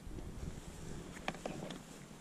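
Wind on the microphone, with a few faint clicks and knocks as a hard plastic case's latches are undone and its lid is lifted.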